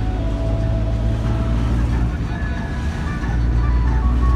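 Steady low rumble of a moving car's engine and tyres, heard from inside the cabin. Faint music with a few held notes plays underneath.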